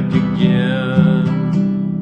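Acoustic guitar strummed in a steady rhythm, accompanying a folk-style song between sung lines.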